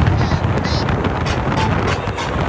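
Wind buffeting the phone microphone on a fast-moving motorboat, a loud steady rumble mixed with the boat's running and water noise.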